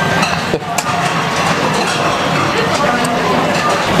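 Busy sushi-restaurant din: many diners talking at once, with a steady low hum and a few sharp clinks of dishes about half a second to a second in.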